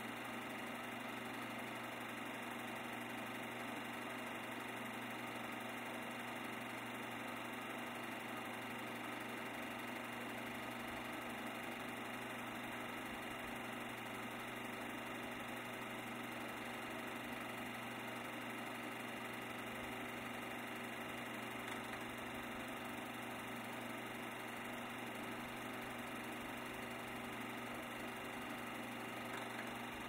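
A steady mechanical whirr with a low hum, unchanging in level and pitch throughout.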